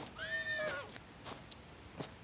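A horse whinnies once, a short call under a second long that rises, holds and falls away. Footsteps crunch in dry leaf litter around it.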